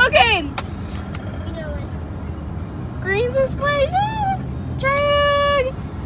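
Steady low road rumble inside a moving car's cabin, with a child's high voice making wordless sounds: a quick gliding squeal at the start, rising and falling hums about halfway through, and a single held note near the end. A few light clicks are heard.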